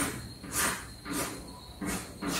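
Chalk scratching on a blackboard in short separate strokes, about one every two-thirds of a second, as the sides of a hexagon are drawn.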